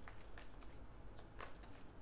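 A tarot deck being shuffled by hand: a faint run of soft, irregular card clicks and slides, the loudest about one and a half seconds in.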